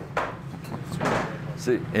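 Restaurant kitchen background: a steady low hum with a couple of short knocks, like a door or drawer, then a man's voice begins near the end.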